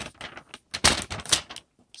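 Stiff clear plastic protective sleeve being slid off a smartphone: an irregular run of crackles and clicks, loudest about a second in, then quiet for the last moment.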